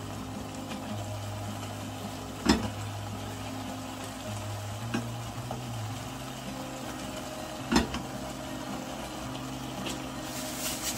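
Soy-sauce squid and pork stir-fry sizzling in a nonstick pan over a steady low hum, stirred with a silicone spatula that knocks sharply against the pan a couple of seconds in and again near the end.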